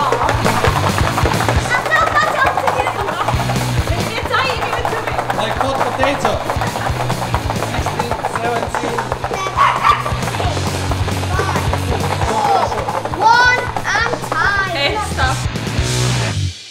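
Garlic cloves rattling fast and continuously as they are shaken hard in a closed square container to knock their skins off. Background music with a steady bass runs underneath, with a few excited voices near the end.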